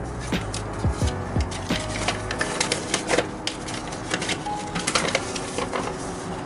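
A folded paper instruction leaflet being opened out and handled, crackling and rustling in many sharp, irregular crinkles. A low beat of background music sits under it in the first second or two.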